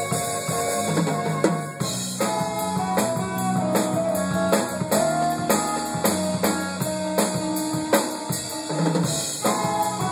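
Live jazz-fusion band playing: a drum kit with frequent snare, bass-drum and cymbal hits under bass, keyboard and saxophone lines.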